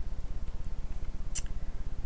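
A steady low buzzing hum with a fast, even pulse, and a single short click just under a second and a half in.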